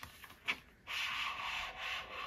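An eyeshadow palette sliding out of its outer sleeve: a short click, then about a second of steady rubbing of the sleeve against the palette.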